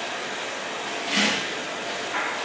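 Steady fan-like room noise in a café, with one brief scrape about a second in as a knife and fork cut into a brownie ice-cream sandwich on a plate.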